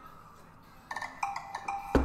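Payment-success chime from a Mastercard hosted checkout page: a short run of a few clear pitched notes starting about a second in, signalling that the test card payment has gone through.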